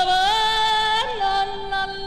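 A woman singing a long, held high note over the show's orchestra. The note dips a little about a second in and is held on.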